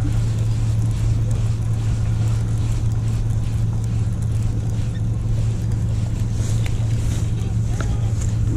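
Steady low engine drone, with an even haze of outdoor noise over it.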